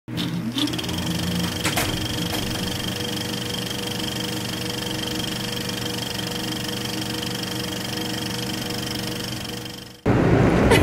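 Soundtrack of an animated title intro: a short rising glide and a sharp hit in the first two seconds, then a steady held drone of several electronic tones that fades out just before the end.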